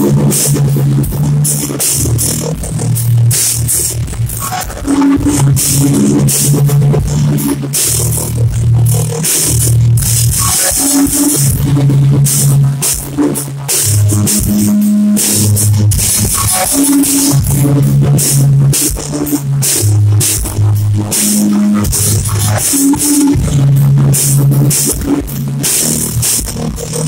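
Sludge metal band playing: a heavily distorted low guitar riff that shifts between a few notes, over drums.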